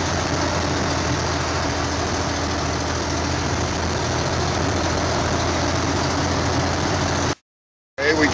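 Steady engine and road drone inside a truck cab, with a strong low hum, as the truck descends a mountain downgrade at about 45 mph. The sound cuts off suddenly about seven seconds in.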